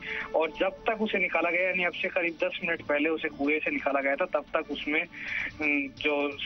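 Speech only: a reporter talking in Hindi without pause, with a music bed faintly underneath.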